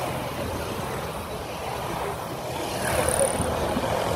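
A stream of small motorcycles passing close by, a steady mix of engine drone and tyre noise that grows slightly louder near the end.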